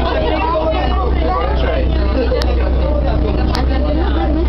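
Indistinct voices talking over the steady low drone of a glass-bottom boat's engine.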